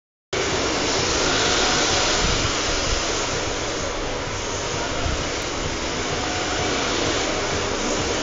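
Steady whirring hiss of rear-wheel-drive RC drift cars running on a smooth indoor track: their electric motors and their tyres sliding on the floor.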